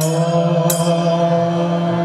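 Devotional group chanting of a mantra over a steady held drone, with a bright metallic strike, like small hand cymbals, about every 0.7 seconds.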